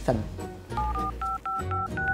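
Smartphone keypad touch tones (DTMF) as a phone number is dialled: about six short two-tone beeps in quick succession, starting a little before a second in.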